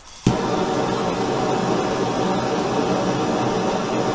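Handheld gas torch lighting with a sharp pop about a quarter second in, then burning with a loud, steady hiss.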